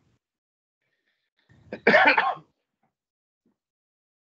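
A single loud cough, about half a second long, about two seconds in.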